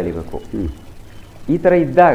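Only speech: a man talking in a studio interview, with a short pause of under a second in the middle before he carries on.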